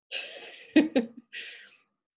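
A person's short breathy laugh: a puff of breath, a sharp voiced burst just under a second in, then a fainter breath.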